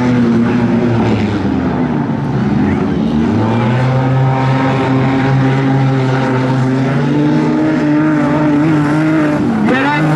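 Wingless sprint car engines running around a dirt speedway oval, a steady engine note that steps up a little partway through, then dips and picks up again sharply near the end as the throttle is lifted and reapplied.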